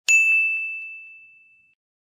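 Notification-bell 'ding' sound effect for clicking a subscribe button's bell icon: one bright strike that rings on a single high tone and fades away over about a second and a half.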